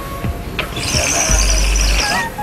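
Vietnamese bamboo water pipe (điếu cày) being drawn on hard for tobacco: a hissing, bubbling rattle that starts under a second in and holds to the end, over background music.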